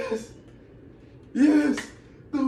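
A man's voice giving two short, loud wordless shouts, one right at the start and one about a second and a half in.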